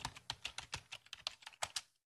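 Typing sound effect: a quick run of light key clicks, about eight a second, that stops shortly before the end.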